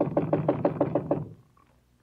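Rapid knocking on a door, a radio-drama sound effect: a quick run of about a dozen knocks that stops a little over a second in.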